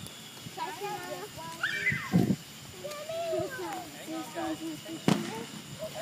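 Quiet voices of people talking, with one sharp crack a little after five seconds in.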